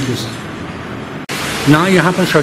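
Steady hiss of recording noise under men's voices: a short trailing word at the start, then an abrupt cut a little past a second in, after which another man starts speaking near the end.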